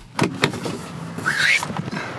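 Car door latch clicking twice as the interior door handle is pulled, then the door opening.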